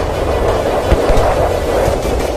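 Ballistic missile warheads exploding on impact: a continuous deep rumble with a sharp thud just under a second in, mixed with music.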